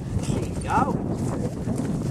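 Horse's hooves on grass as it lands over a log jump and canters away.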